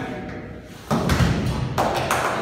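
A volleyball thrown at a small goal lands on the foam floor mats with a sudden thud about a second in. Voices follow.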